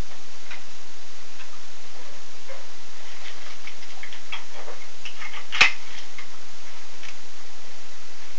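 Nylon straps and plastic buckles of a drop leg holster being fastened round the leg: a few faint clicks, then one sharp buckle snap about five and a half seconds in, over a steady hiss.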